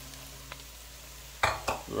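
Low sizzling of sautéed vegetables in an enamelled pot. About one and a half seconds in comes a short clatter of raw pumpkin cubes knocking into the pot.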